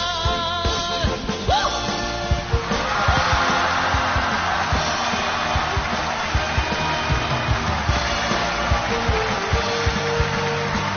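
A live rock band playing: a man's sung note, held with vibrato, ends about a second and a half in. The band then plays on with drum kit, electric guitar and keyboards.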